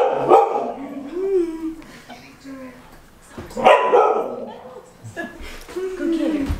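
A dog barking and vocalizing in play. The barks are loudest right at the start and again about three and a half seconds in, with wavering, whine-like sounds between them.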